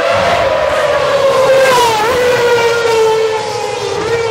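2008 McLaren MP4-23 Formula One car's Mercedes 2.4-litre V8 engine running hard down the street. It gives one long, loud note whose pitch slowly falls, with a brief dip and recovery about halfway through.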